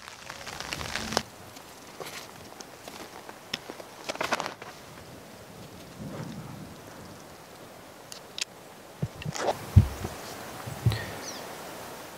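Soft handling of climbing rope and gear on a tree: brief rustles near the start and about four seconds in, then a few sharp clicks and thumps near the end, over a steady faint hiss.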